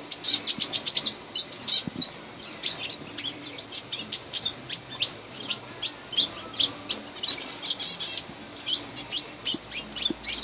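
Small aviary birds, finches and canaries, chirping busily: many short, high calls tumbling one after another without a break.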